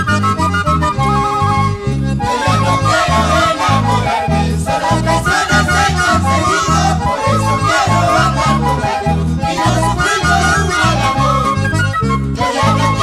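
Andean carnival band music, an instrumental passage: a stepping lead melody over strummed guitars and a steady, evenly repeating bass beat.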